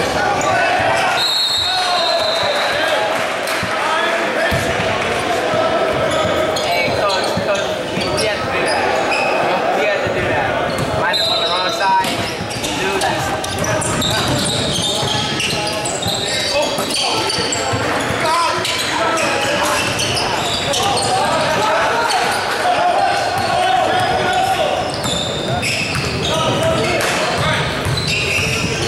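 Basketball game sounds in a large, echoing gym: indistinct shouting and chatter from players and spectators, a ball bouncing on the hardwood floor, and a few short sneaker squeaks.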